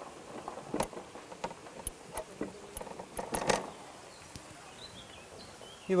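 A paint rag scooping up oil paint and being dabbed on a canvas: scattered soft taps and rustles, with a louder scuffing dab about three and a half seconds in.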